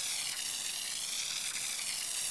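Water spraying steadily from a hose-end spray nozzle onto turfgrass, an even, unbroken hiss.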